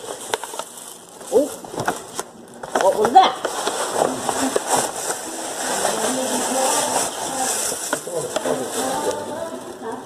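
Paper gift bag and tissue paper rustling and crinkling as a present is unpacked, with scattered crackles throughout.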